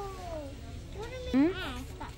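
A wailing, ghost-like voice: a long falling "oooh" that fades about half a second in, then a short wavering call that rises and falls about a second and a half in.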